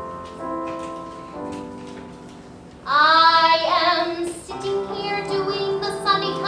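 Piano playing a slow introduction, then about halfway through a woman's singing voice comes in loudly over it, holding notes with vibrato while the piano accompanies.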